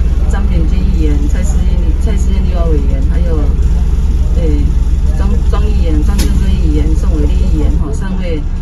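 Steady, loud low rumble of a coach bus heard from inside its cabin, with people's voices talking over it.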